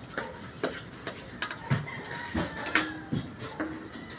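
A spatula knocking and scraping against a wok as beef pieces are stir-fried, a string of irregular clicks.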